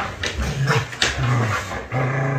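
A dog making a series of low, drawn-out whining sounds, each held for under half a second, with a short sharp knock about a second in.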